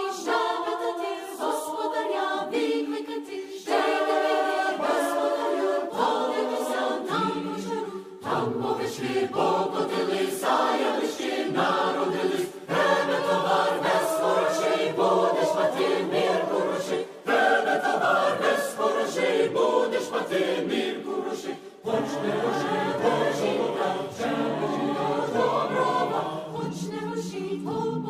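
A Ukrainian folk choir singing a shchedrivka, a New Year's carol, in several voice parts, with lower voices joining about eight seconds in.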